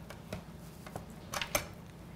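Faint handling sounds of hands working a raw chicken in a metal roasting pan: a few light clicks and taps, the loudest pair about a second and a half in.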